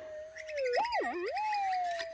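Minelab GPZ 7000 metal detector's steady threshold tone breaks about half a second in into a wavering target signal. The pitch swoops up, drops low and rises again over about a second, then settles back to the steady tone. It is the response to a clump of clay passed over the 12-inch Nugget Finder coil, the sign of a gold nugget in the clump.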